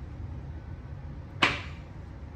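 A single sharp clack about a second and a half in, with a short ringing decay: a plastic jar set down on a glass tabletop. A low steady room hum lies underneath.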